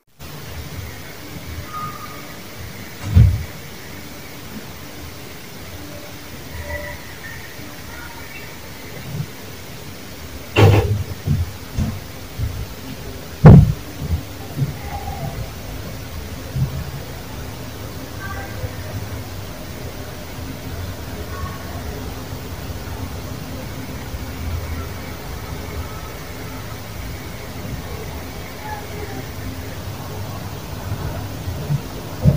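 Playback of a phone's audio recording, amplified as a whole: a steady hiss and low rumble of boosted background noise, broken by a few sharp knocks, the loudest about halfway through.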